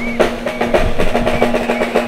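Drumming with snare rolls and sharp hits, over a steady low held tone.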